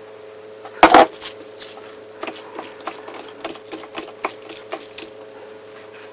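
A loud metallic clank just under a second in, then a utensil knocking and clinking against a stainless steel bowl, about three knocks a second, as chicken pieces are stirred through a soy sauce marinade.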